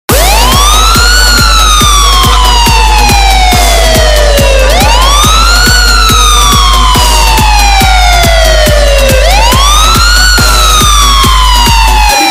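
Loud electronic dance music intro: a siren-like synth sweep that rises quickly and falls slowly, repeating about every four and a half seconds, over a fast steady kick drum and a held deep bass. The bass drops out right at the end.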